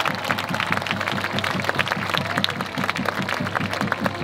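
A crowd applauding over a fast, steady drum beat.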